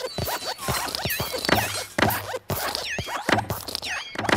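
Cartoon sound effects for hopping animated desk lamps: a rapid run of small clicks and thumps mixed with short squeaky chirps that dip and rise in pitch.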